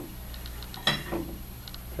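A few faint clicks and small taps from handling a Crater 3000 vaporizer pen as its bottom cap comes off, the sharpest click about a second in.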